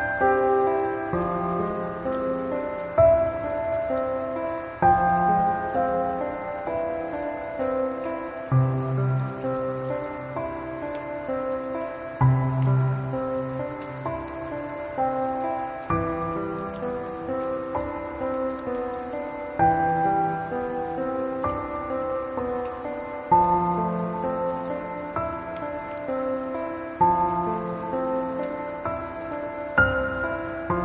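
Slow, calm solo piano music, with a new chord struck about every three and a half seconds and notes ringing out between, layered over a steady rain sound with faint drop ticks.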